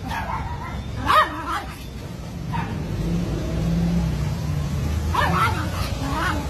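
Small dog barking: one sharp bark about a second in, then a few short barks near the end, over a low steady background hum.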